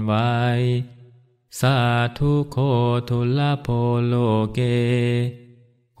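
A Buddhist monk chanting in a low, steady male voice on held recitation pitches. The end of a Thai phrase comes first, then after a short pause about a second in, a Pali verse line that stops just before the end.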